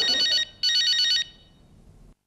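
Telephone with an electronic ringer ringing twice: two short, rapidly warbling rings, the second ending a little over a second in.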